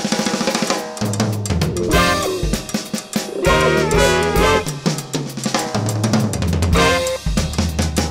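Funk band playing an instrumental passage: a drum kit groove with snare and bass drum up front, under a bass line and short pitched horn riffs.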